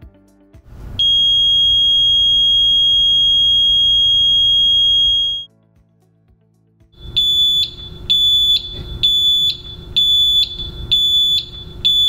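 Signal tower stack light's controller-base buzzer sounding a single high-pitched alarm tone, first as one continuous tone for about four seconds and then, after a pause, in its pulsing mode, beeping on and off about twice a second.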